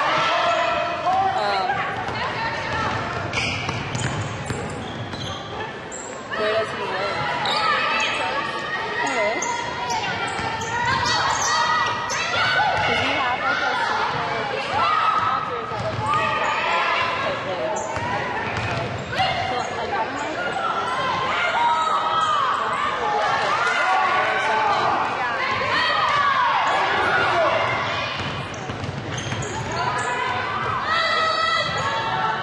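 Basketball game in a gymnasium: the ball bouncing on the hardwood court amid indistinct calls and shouts from players, coaches and spectators, echoing in the large hall, with scattered sharp knocks throughout.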